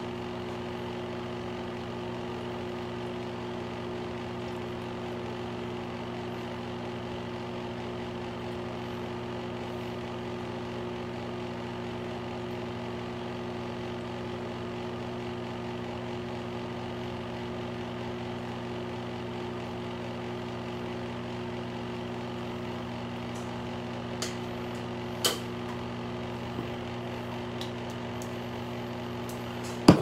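Steady machine hum of several fixed low tones, unchanging throughout, with a few short clicks about three-quarters of the way in.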